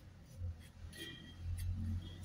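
Faint, sparse scrapes and taps of a plastic spoon stirring dry chili powder on a metal plate, over a low steady hum.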